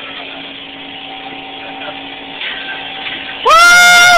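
A rider's loud, high-pitched "whoo!" near the end, held for under a second, over a steady background hum from the ride.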